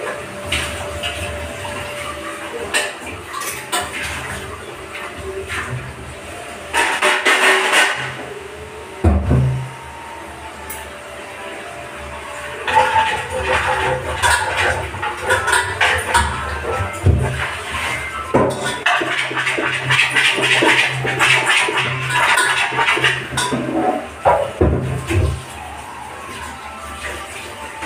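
Background music over tap water running into a kitchen sink, surging in several stretches, with occasional knocks and clinks of utensils.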